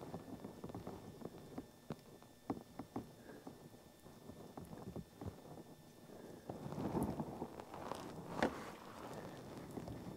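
Faint handling sounds: scattered light clicks and short rustles, a little louder about seven seconds in, from a gloved hand working a small primer brush around the aluminum crankshaft seal housing.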